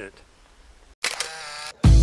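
Edited transition: a faint pause, then a short sound effect of under a second about a second in, and loud intro music starting right at the end.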